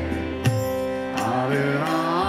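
Kirtan music between sung lines: a harmonium holds a sustained chord over a low drone while a tabla plays, with a sharp drum stroke about half a second in.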